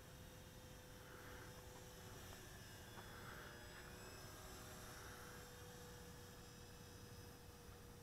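Near silence, with a faint steady hum and a faint high whine that bends slightly in pitch around the middle, from the electric motor and propeller of a distant E-flite P-47 Thunderbolt RC model plane.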